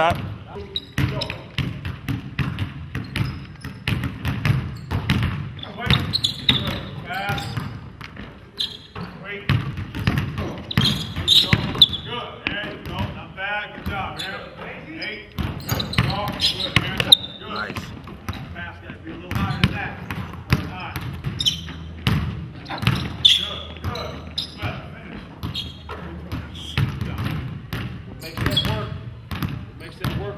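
A basketball dribbled on a hardwood gym floor, bouncing again and again in short sharp thumps, with voices in the background.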